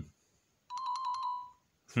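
An imoo Z6 smartwatch's built-in speaker plays a text-message tone preview: a quick run of about six short chiming notes and then one held note that fades, lasting under a second. It is not really loud.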